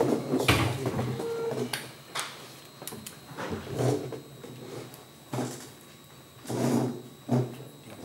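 Irregular knocks, shuffles and scrapes of people standing up among metal folding chairs and walking on a hard floor.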